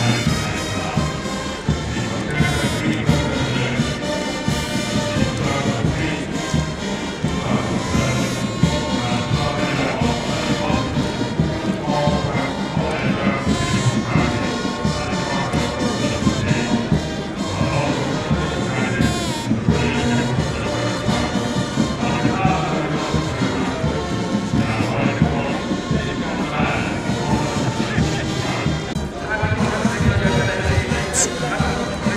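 Military brass band playing continuously, with brass instruments carrying the tune.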